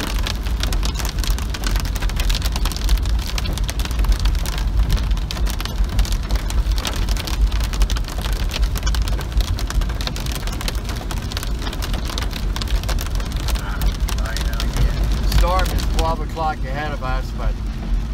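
Heavy rain hitting a moving car's windshield and roof, a dense patter of fine ticks over the low rumble of the car driving on a wet road. A man's voice comes in over it near the end.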